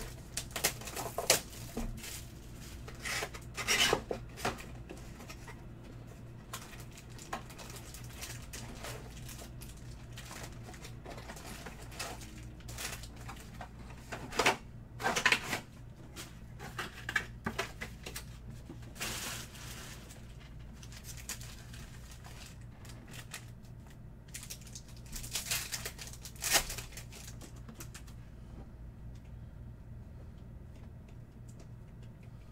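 Plastic wrapping and foil packs of trading cards being torn open and crinkled, with cards shuffled in the hands, in irregular bursts of rustling that are loudest near the start, about halfway and near the end. A steady low hum runs underneath.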